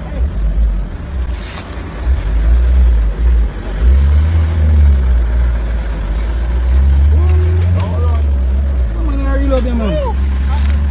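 Outdoor phone recording: a steady low rumble throughout, with voices speaking briefly a few times, near the middle and toward the end.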